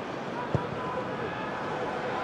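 Football stadium crowd noise, steady, with a single thud about half a second in as the ball is struck for a free kick.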